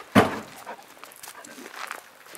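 A golden retriever gives one short, loud bark just after the start, followed by faint rustling of paws on gravel.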